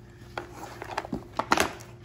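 Mizuno youth catcher's shin guards being handled and shifted on a carpet: a few light knocks and rustles of the plastic shells and straps, the loudest about one and a half seconds in.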